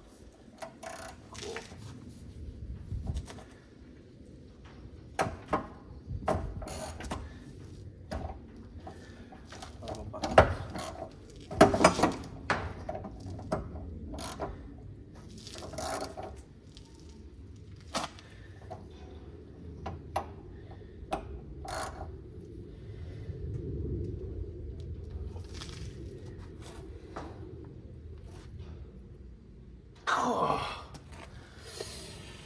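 Ratchet wrench and socket on the crankshaft bolt of a 1966 Hillman Imp's rear-mounted engine: irregular clicks and metallic knocks with pauses between, as the stiff, long-stored engine is worked by hand.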